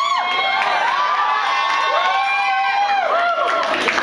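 Concert crowd cheering and whooping, many voices overlapping in long, high calls.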